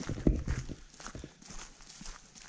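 Footsteps on a gravel road at a walking pace, several short crunches a second, a little louder in the first half second.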